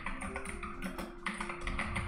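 Computer keyboard typing, a quick run of keystrokes, over soft background music with steady held tones.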